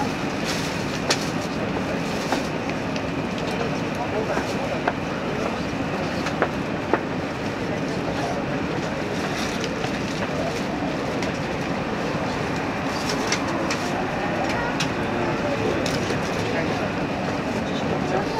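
Cabin noise of a 789-series electric express train running at speed on the line, a steady rumble with a few sharp clicks scattered through it.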